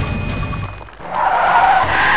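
Car engine running hard, dropping away just before a second in, then a loud, sustained tyre screech as the hot rod peels out.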